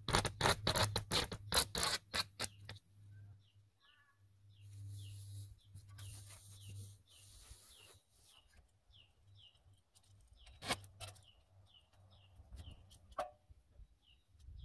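At the start, a quick run of crackling, rasping strokes as flashing tape is worked onto the wall sheathing; after that a bird calls over and over in short falling notes, about one or two a second, with a couple of light knocks.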